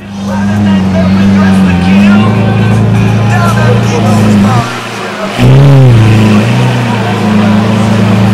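Lamborghini Aventador's V12 running loudly at low speed as the car pulls slowly away, with a brief drop in level and then a short rev blip, rising and falling, about five and a half seconds in.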